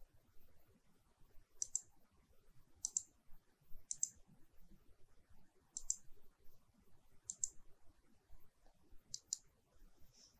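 Faint computer mouse clicks: about six quick double clicks spaced unevenly, a second or two apart.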